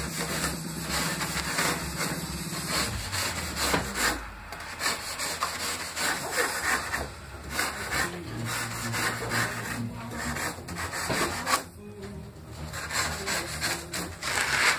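Styrofoam (expanded polystyrene) being scraped and rubbed by hand in a run of quick, uneven strokes as a carved figure is shaped and smoothed.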